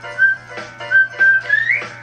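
Cartoon theme-song music: a whistled tune of short notes over a steady beat, the last note sliding upward near the end.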